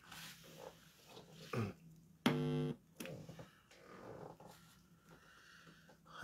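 Quiet wordless vocal sounds from a man: a low grunt falling in pitch about a second and a half in, then a short, steady hum, with faint breathy mouth sounds around them.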